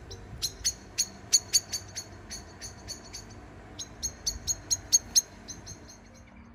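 Eurasian blackbird giving a rapid series of short, sharp, high chink calls, about five a second, in two bouts with a brief break near the middle.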